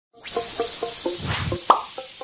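Short intro music sting: a swelling whoosh under a run of quick plucked, popping notes, about four a second, ending on a brighter, louder note near the end.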